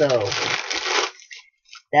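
Plastic wrapping crinkling and rustling as a bath bomb is handled, for about a second.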